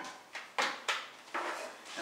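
Wet string mop swished back and forth on a concrete floor, a quick run of short scraping swishes, about two or three a second.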